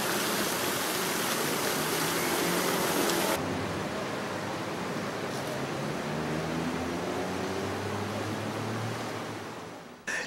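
Steady rush of fountain water falling and splashing. A little over three seconds in, the sound turns duller and loses its hiss, and it fades away near the end.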